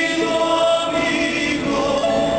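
Large mariachi ensemble performing live, playing long held notes with voices singing together.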